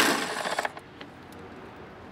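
A socket tool working the rear hold-down bolt of a Toyota Prado 150's airbox: a sharp metallic burst right at the start that fades over about half a second, then a faint click about a second in.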